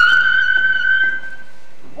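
A high-pitched squeal of excitement from a young actor: one long held note, rising slightly, lasting nearly two seconds before it fades.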